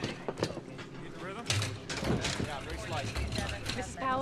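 Several firefighters talking at once, their words indistinct, over knocks and clatter of gear. A low steady rumble sets in partway through.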